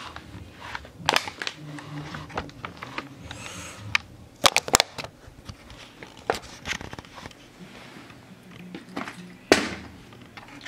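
Plastic bottle being flipped and landing on a carpeted floor: a few sharp knocks, with a quick cluster about halfway through and the loudest thud near the end, where the flip lands upright.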